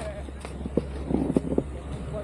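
Faint, indistinct voices in short snatches over a steady low rumble.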